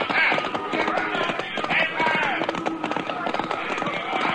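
Horses galloping: a quick, continuous patter of hoofbeats, a radio-drama sound effect, with pitched calls mixed over it.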